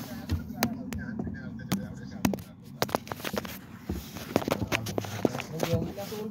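Irregular sharp metallic clicks and knocks, coming thicker and faster in the second half, from hands and tools working among the parts in a car's engine bay.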